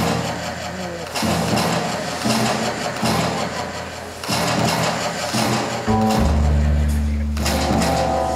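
Jazz big band playing live in a hall, heard from the audience: short chords about a second apart, then a strong sustained low note from about six seconds in.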